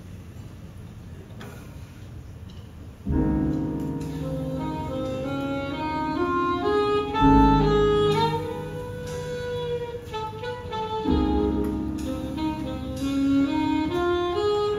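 Grand piano starts a slow chordal introduction about three seconds in, with deep low notes and long held melody notes over it, after a few seconds of quiet room noise.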